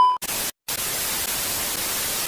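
TV-static transition sound effect: a steady white-noise hiss with a brief dropout about half a second in. At the very start, the tail of a high, steady test-card beep fades out before the hiss begins.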